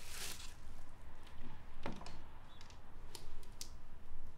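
Light clicks and taps from a picture frame being picked up and handled, a few scattered clicks with most in the second half.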